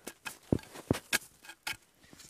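A handful of short, sharp knocks and rustles as a thick wooden branch is handled and laid across a blanket on snow.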